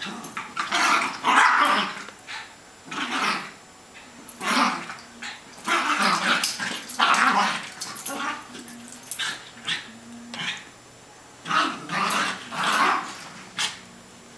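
Two small terrier-type dogs play-fighting, growling and barking in repeated short bursts.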